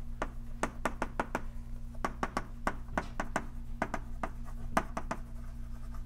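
Chalk writing on a blackboard: a quick, irregular run of sharp taps and short strokes as the chalk strikes and drags across the board.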